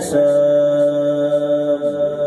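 A male Quran reciter holds one long, steady drawn-out note through a microphone and loudspeakers, with an echo on it. The note dips in pitch near the end. A short click comes just before it begins.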